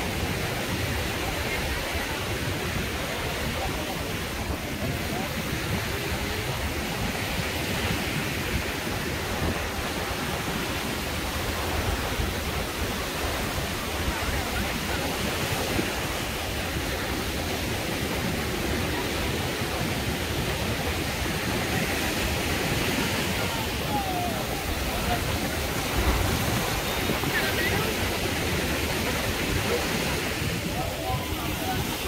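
Busy beach ambience: a steady rush of small waves and wind with the indistinct voices of many people chatting around. There is one brief low thump about 26 seconds in.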